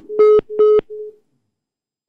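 Telephone line beeps heard over a broadcast phone-in feed: short, even beeps of one pitch, each about a quarter second long, the last one fainter, dying out about a second in. They are the sign of the caller's call dropping mid-sentence.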